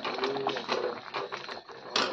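Metal ladle stirring thick mushroom curry in a metal pan: scattered irregular clicks and soft knocks of the ladle against the pan and in the gravy, with a sharper knock at the end.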